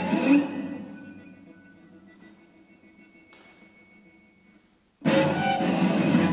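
Solo instrument playing contemporary classical music. A loud accented attack rings and dies away over about two seconds into faint held high tones. About five seconds in a fresh loud, dense attack starts.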